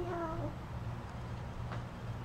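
A short, high-pitched, meow-like voice in the first half-second, holding a fairly even pitch, then only a faint low hum.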